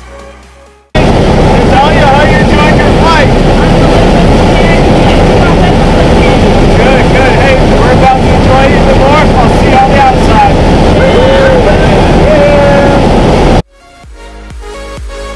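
Loud, steady engine and propeller noise inside a small jump plane's cabin during the climb, with voices talking over it. It cuts in abruptly about a second in, as music fades out, and cuts off just before the end.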